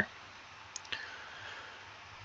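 Computer mouse clicking faintly twice in quick succession, about a second in, over a low background hiss.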